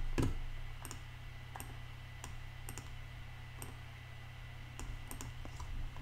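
Scattered light clicks at a computer, irregular and one or two a second, over a steady low hum.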